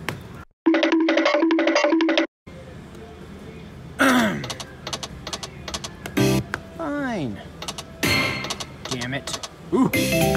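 Destiny of Athena video slot machine sound effects. A short electronic chime figure repeats about four times starting half a second in, then the reels spin and land with clicks and several falling-pitch swoops.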